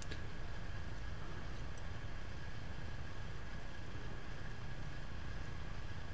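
Steady background room noise, an even hiss and low hum with a faint high steady tone; the swirling of the flask and the drops from the burette cannot be heard.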